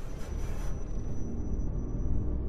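Intro music and sound effects: a deep, steady rumble, with a few short rushing noises in the first half-second, after which the higher sounds fade away.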